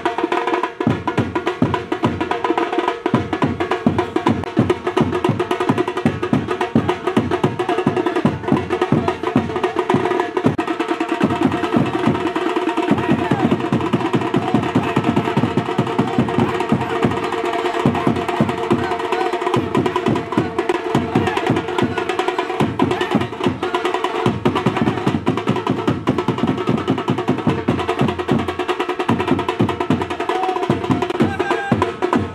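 Street drums beaten in a fast, steady rhythm, the deep beats dropping out briefly a few times, with a held pitched sound running over them.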